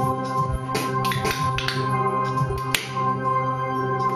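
Roland Fantom-X6 synthesizer playing a held organ-style chord, with sharp percussive hits sounding over it irregularly, the brightest near the end.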